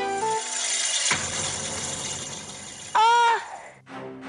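A crash and clatter of things falling as a boy tumbles from a kitchen shelf, a noisy wash lasting about three seconds, with a sharper hit about a second in. Near the end comes a brief high cry from the boy, rising then falling, the loudest moment. A few notes of background keyboard music open it.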